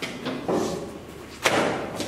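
Wooden school desks knocking, with one loud slam about one and a half seconds in.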